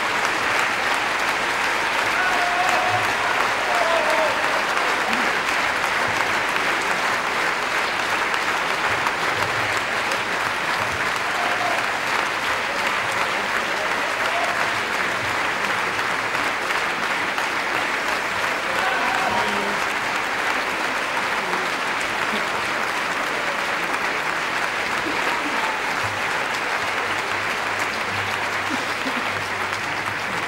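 A theatre audience applauding steadily, with a few voices calling out above the clapping.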